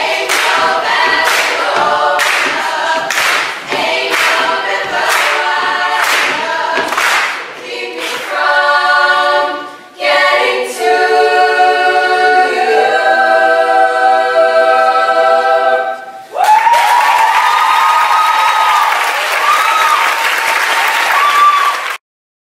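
Young women's a cappella choir singing, first a rhythmic passage with a sharp beat about every half second, then long held chords that end about sixteen seconds in. Applause and cheering from the audience follow.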